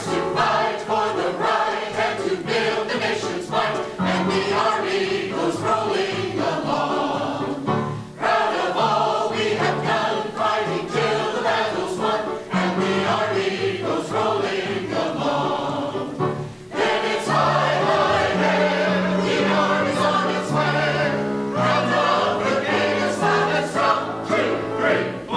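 Mixed choir of men and women singing together, accompanied by a keyboard, with two brief pauses between phrases, about 8 and 16 seconds in.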